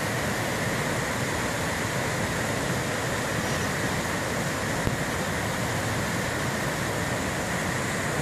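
Mountain stream rushing over rocks and small cascades, a steady, even noise.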